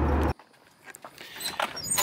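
Steady low drone of a Mitsubishi Evo IX's cabin at highway speed, engine and road noise together, which cuts off abruptly a third of a second in. Near quiet follows, with a few faint taps near the end.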